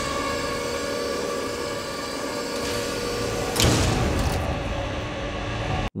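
Sci-fi sound effect of a heavy mechanical lift under a TIE fighter: a steady machine hum with several held tones. It swells about three and a half seconds in and cuts off suddenly just before the end.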